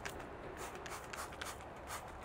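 Hand trigger spray bottle squirting wheel cleaner onto a car wheel: a quick series of short, faint sprays, about two or three a second.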